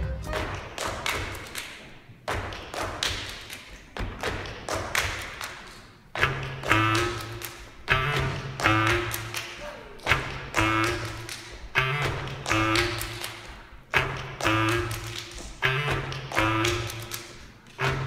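Body percussion on a wooden stage: stamping feet and claps in a steady beat of about one strong hit a second with lighter hits between, ringing in the hall. From about six seconds in, short accordion bass notes and chords sound on the beats.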